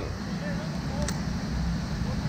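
Wind buffeting an action camera's microphone, a steady low rumble, with a faint click about a second in.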